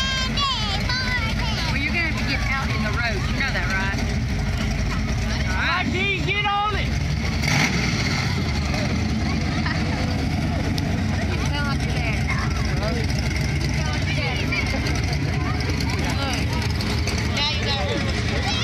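Low, steady engine rumble from parade vehicles rolling slowly past, under continuous crowd chatter and children's voices; a short hiss about halfway through.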